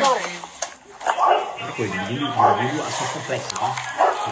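Police officers' voices on body-camera audio, with a call of "watch out" among them.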